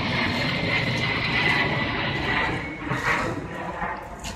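Airplane passing overhead: a steady, loud roar with a high whine in it, easing off about three seconds in.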